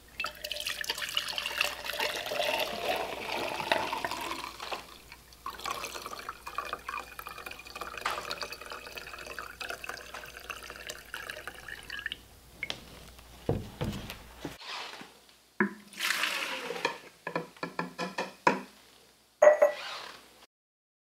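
Gasoline pouring from a plastic gas can's spout into a glass mason jar, a steady splashing pour that stops about twelve seconds in. After a pause, a quick run of knocks and clatters from plastic containers being handled.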